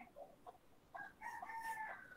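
A faint bird call, a short note followed by a longer held note that falls slightly in pitch at its end, with a few faint clicks before it.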